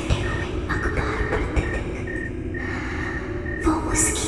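Horror-film soundtrack: a low, steady rumbling drone, with a high electronic beep pulsing on and off a few times a second over it.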